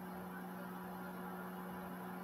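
Quiet room tone: a steady low hum with faint hiss.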